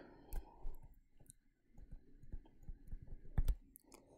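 Stylus tapping and clicking on a tablet screen while a word is handwritten. The clicks are faint and irregular, with a sharper pair about three and a half seconds in.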